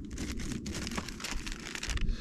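A clear plastic bag crinkling and rustling as it is drawn out of a plastic storage tote, a dense run of small crackles.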